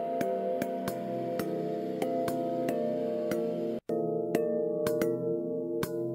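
Generative electronic music: sustained, reverberant bell-synth tones from the Doomsday Bell patch under irregular percussive drum-sample hits, triggered by a randomized pulse sequencer and run through a convolution reverb. The sound cuts out for an instant a little before four seconds in.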